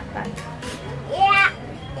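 Speech: a young child's voice, with a short high-pitched exclamation about a second in, over background music.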